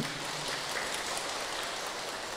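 An audience applauding, a steady patter of many clapping hands.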